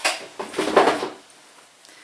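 Handling noise as a folded bath towel is pulled out of a gift box: a short rustle at the start, then a louder rustling scrape about half a second in that lasts about half a second.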